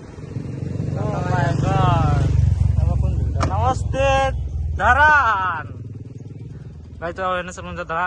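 Motorcycle engine passing close by, a low rumble that builds up and fades away over about six seconds, with people talking over it.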